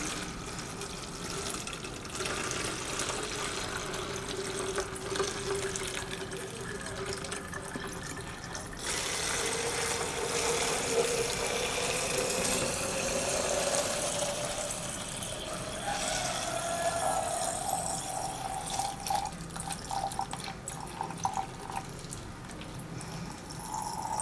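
Water pouring in a steady stream into a large plastic water bottle, the pitch of the filling rising slowly as the bottle fills up.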